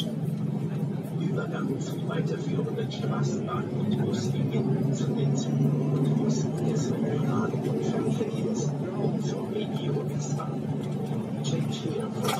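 Steady running hum of a tram in motion, heard from inside the car, with a voice speaking over it.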